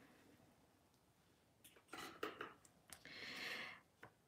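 Near silence: a few faint small clicks about halfway through, then a brief soft hiss near the end.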